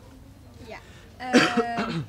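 A man clearing his throat once, a little over a second in.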